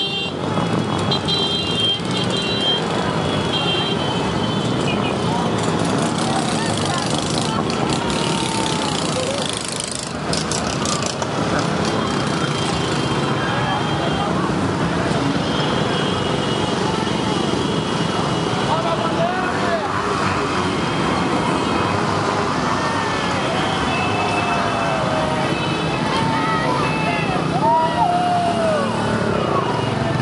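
A large group of small motorcycles and cars running together at low speed, a dense steady engine and road noise, with many voices shouting over it.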